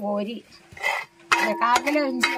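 A spoon scraping and clinking in a terracotta pot as thick curry is stirred, with one short scrape near the middle. A person talks over it.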